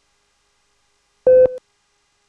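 A single short electronic beep: one steady mid-pitched tone lasting about a third of a second, the kind of cue tone that sits on a TV commercial's slate just before the ad runs.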